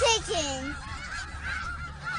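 Two or three short animal calls falling in pitch in the first half second or so, then fainter.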